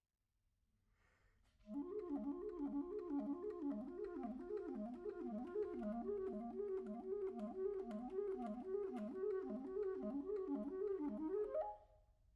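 Buffet Crampon RC Prestige clarinet with a Vandoren mouthpiece and reed, playing a fast passage of repeated up-and-down runs in its low register. It comes in about two seconds in and stops just before the end, rising to a higher note at the close. The passage demonstrates D-flat taken with the side key.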